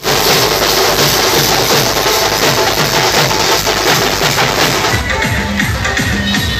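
A band of dhol barrel drums beaten with sticks in a fast, loud, driving rhythm. About five seconds in, the sound changes to other music with a held low note.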